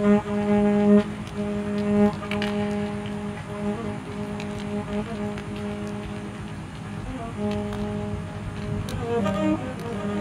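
Amplified violin bowing a low note again and again, about one stroke a second, fading down in the middle and coming back about seven seconds in. It plays over a steady noise track with scattered clicks.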